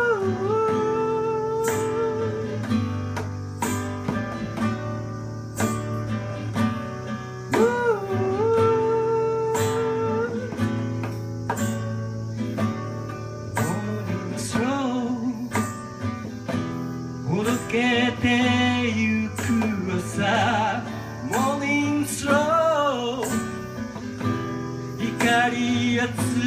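Live song: a man singing over a strummed acoustic guitar, holding long wavering notes in places.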